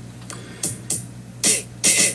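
A man's quiet breaths and mouth noises, several short hissy puffs, over a steady low hum.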